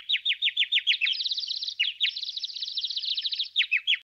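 A bird chirping in a rapid series of short, high notes that each slide downward, about seven a second, turning into a faster, higher trill about a second in.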